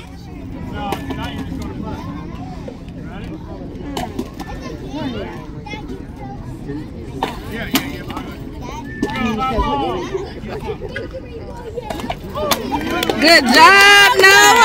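Spectators and children chattering and calling out by a youth baseball field, then loud, high-pitched shouting and cheering near the end as the batter runs for base.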